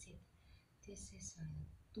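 A woman's voice, speaking softly, close to a whisper, in short quiet bits about a second in.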